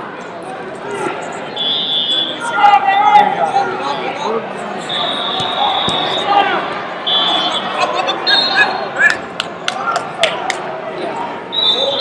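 Busy wrestling-hall din, with coaches and spectators shouting and chattering in a large echoing room. Several short, steady, high whistle blasts from referees' whistles cut through about two, five, seven, eight and twelve seconds in. A quick run of sharp smacks comes between about eight and a half and ten and a half seconds in.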